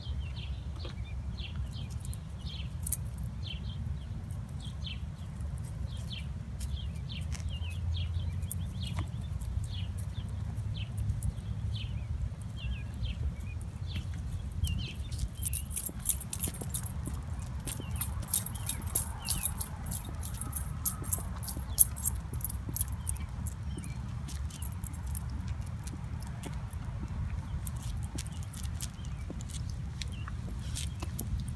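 Wind rumbling on the microphone, with small birds chirping in quick, short calls through the first half. In the second half, footsteps tick on the asphalt.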